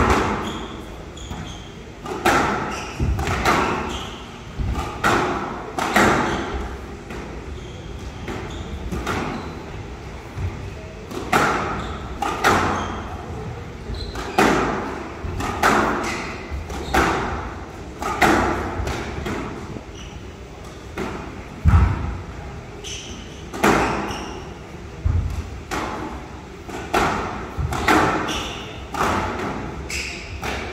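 Squash rally on a glass court: the ball is struck by rackets and thuds off the walls, a sharp hit every second or so, echoing in a large hall.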